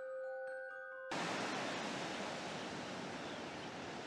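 A few sustained glockenspiel-like chime notes cut off abruptly about a second in, replaced by the steady noise of ocean surf washing on a shore.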